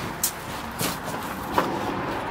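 A few light footsteps on dry leaves and dirt over a steady outdoor background hum.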